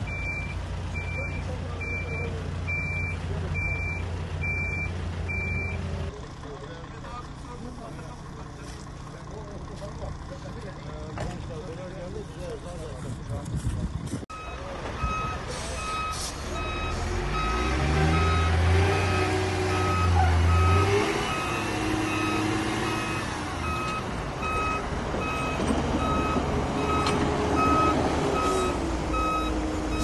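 A Hidromek backhoe loader's diesel engine running, with a reversing alarm sounding a steady train of beeps. Voices are heard in a quieter stretch, then the alarm beeps again at a lower pitch while the engine revs hard under load for a few seconds.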